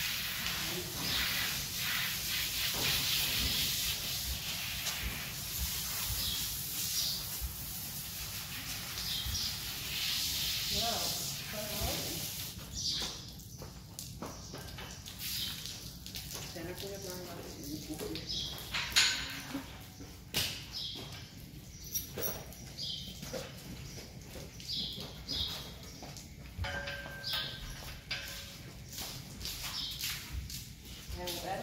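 Hose spray nozzle hissing as water is sprayed over a horse's wet coat. The hiss stops about twelve seconds in, and scattered knocks and clicks follow.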